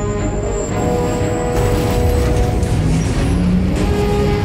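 Sustained orchestral film score, joined about a second and a half in by a spaceship's engine noise swelling up with a faint high whine as the ship lifts off.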